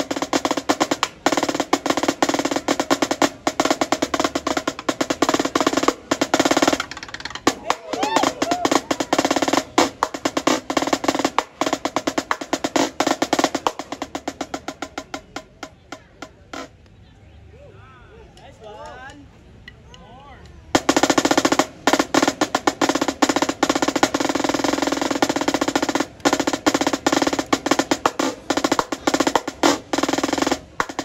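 Marching snare drum played solo with fast sticking and rolls. Midway it drops to soft playing and a brief pause with voices underneath, then comes back loud and dense about two-thirds of the way through.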